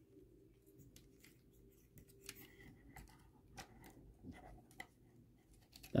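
Faint, scattered plastic clicks and light scraping from a Transformers Studio Series Bonecrusher action figure as two small tabs are pressed into their holes during transformation.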